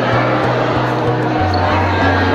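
Music with a heavy bass beat, pulsing about three times a second, its bass note dropping about one and a half seconds in, over the chatter of a crowd of people greeting one another.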